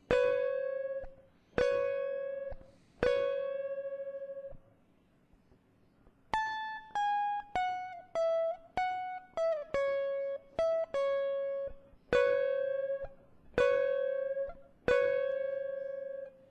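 Stratocaster-style electric guitar in a clean tone playing a single-note solo line. It plays three bent notes in a row at the same pitch, each left to ring for about a second, then after a short pause a quick descending run of shorter notes, then five more held notes at the lower pitch.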